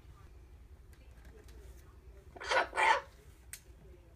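Pet cockatoo giving two short, loud, harsh squawks in quick succession about two and a half seconds in.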